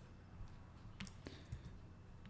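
A few faint, sharp clicks, about a second in and twice more within the next half second, over near-silent room tone.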